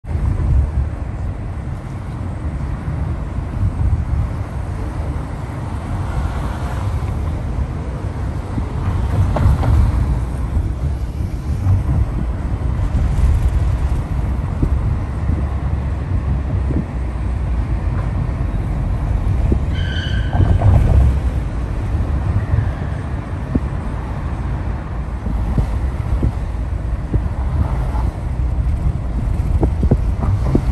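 A car driving, heard from inside the cabin: a steady low rumble of road and engine noise, with a brief high tone about two-thirds of the way through.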